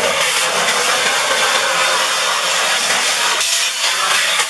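Vacuum cleaner running steadily, its hose nozzle sucking up crumbs and loosened grime from a glass cooktop.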